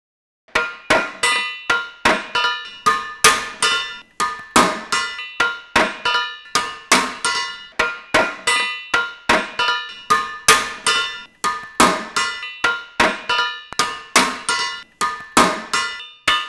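Metal being struck in a quick, even rhythm, about three ringing clangs a second.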